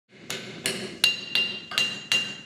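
Blacksmith's hand hammer striking metal on an anvil: five blows at about two and a half a second, each leaving a clear metallic ring.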